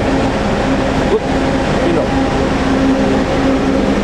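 Steady low mechanical hum of an idling coach engine, with a constant droning tone.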